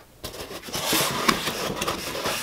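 A cardboard box being handled: the lid and flaps rub and scrape, with a few light clicks, starting about a quarter second in.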